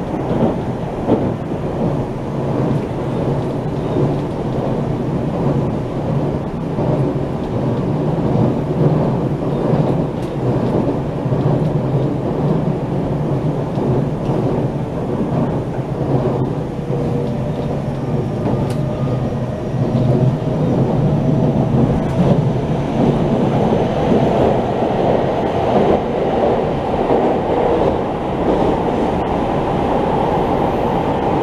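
Cabin running noise of a JR Central 383 series electric train travelling at speed: a steady low rumble of wheels on rail with scattered faint clicks, growing a little louder in the last third.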